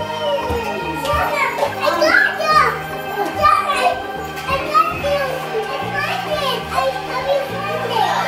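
Young children's voices, high calls and babble as they play, over music with a bass line that steps between held notes.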